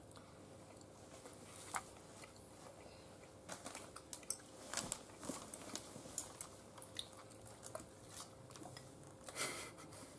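A person chewing a mouthful of pukeko breast meat from a stew. The chewing is faint, with small mouth clicks scattered through it.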